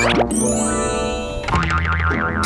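Comic cartoon sound effects over background music: a long, slowly falling tone, then a quick wavering tone about one and a half seconds in.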